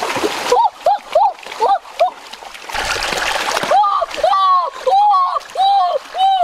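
Water splashing in a shallow stream as a boy thrashes about grabbing a fish by hand, with two bursts of splashing: one at the start and a longer one about three seconds in. Throughout, a voice calls out in short, repeated, rising-and-falling syllables.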